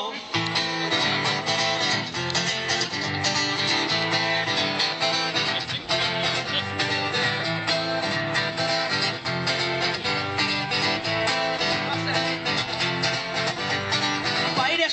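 Live band playing an instrumental guitar passage with a steady beat, with no singing.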